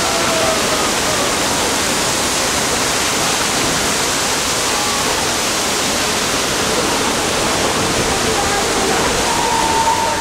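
A special-effects flood: a steady torrent of water rushing and crashing down steps and across a film-set floor.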